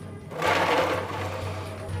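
Ice cubes and water rattling and sloshing in a plastic tub as a hand is drawn out of the ice water; the noise swells about half a second in and then fades. Background music with a low steady note underneath.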